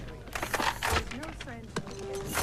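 A handgun drawn fast from its holster and brought up: a quick run of sharp clicks and knocks in the first second.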